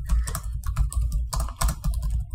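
Computer keyboard typing: a quick, irregular run of key clicks over a steady low hum.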